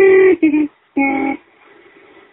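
A voice singing three short, wordless held notes, which stop about one and a half seconds in.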